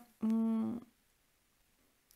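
A woman's brief vocal hesitation filler: one held, steady-pitched hum of about half a second near the start, with no words.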